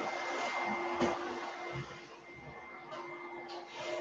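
Room tone with a steady low hum and a thin high whine, broken by a few soft knocks and rustles as a book is set down on a desk and a computer mouse is handled.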